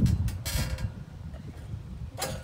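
A low rumble on the microphone that fades within the first half second, then faint outdoor background noise with a few brief rustles.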